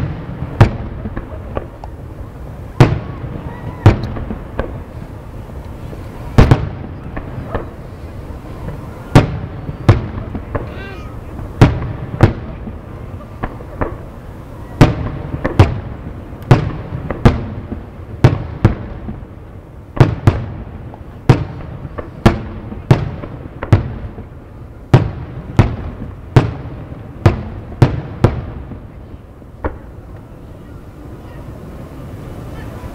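Aerial firework shells bursting in quick, irregular succession, about one or two sharp bangs a second and some in tight clusters, with a low rumble lingering between them.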